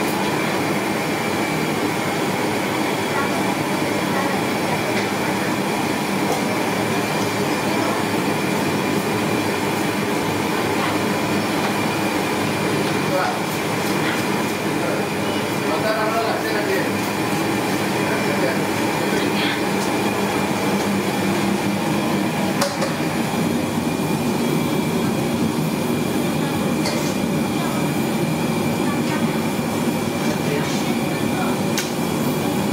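Steady hiss of gulab jamun dough balls deep-frying in a wok of oil over a gas burner, running evenly throughout with a few small clicks and ticks.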